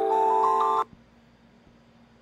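A short burst of piano music: sustained notes with higher notes added one after another, cut off abruptly under a second in, then near silence.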